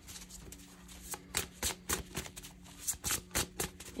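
A deck of tarot cards being shuffled by hand: a run of irregular, quick card snaps over a faint steady low hum.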